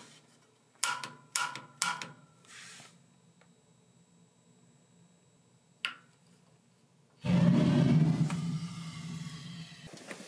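A water heater's gas control valve clicking as its standing pilot is relit: a few light clicks about a second or two in, then one sharp piezo igniter click about six seconds in. From about seven seconds a steady rushing noise with a low hum starts and fades toward the end.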